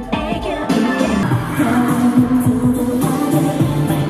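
Live K-pop song: a woman singing into a handheld microphone over a pop backing track, heard through the concert sound system from the audience. The music changes abruptly about a second in, where one performance cuts to another.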